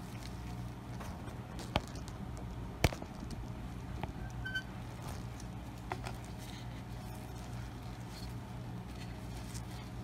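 Steady low hum with a few faint handling clicks and taps; two sharp clicks stand out, the louder one about three seconds in.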